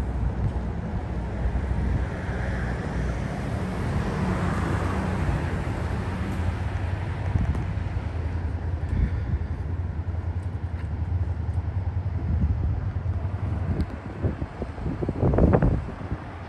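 Steady low rumble of road traffic, swelling as a vehicle passes a few seconds in. Wind buffets the microphone in gusts near the end.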